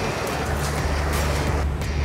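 Outboard boat engines running with a steady low rumble, under the rush of water churning into a fish box.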